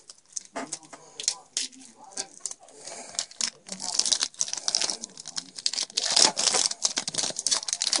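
A Yu-Gi-Oh! Duelist Pack's foil wrapper crinkling and tearing open in the hands, as a rapid run of crackles that grows louder and busier about halfway through.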